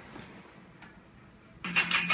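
Quiet room with a faint click a little under a second in, as a key on a laptop is pressed. About a second and a half in, a louder sound with quick, evenly spaced strokes starts: a song beginning to play from the laptop's speakers.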